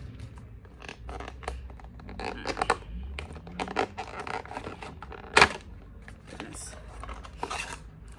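Packaging of a boxed perfume being torn and opened by hand: irregular tearing, crinkling and scratching, with one sharp click about five and a half seconds in, the loudest sound.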